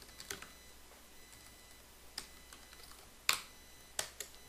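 Computer keyboard keystrokes: a few light, scattered key clicks, with one louder key strike about three seconds in.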